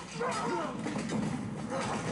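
Fight-scene soundtrack from a TV drama: scuffling and blows mixed with a man's short strained vocal sounds, as a sword fight ends.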